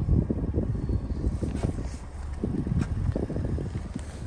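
Wind buffeting the microphone: an uneven low rumble that swells and dips.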